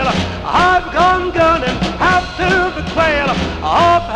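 Up-tempo swing-style band music: a melody line swooping into its notes over a steady bass-and-drums beat.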